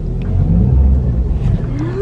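Small car's engine pulling away, heard from inside the cabin as a low rumble that swells in the middle. Near the end a voice rises sharply in pitch.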